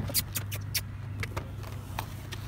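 Light sharp clicks and ticks from leather reins being gathered up by hand, about six in two seconds, over a steady low hum.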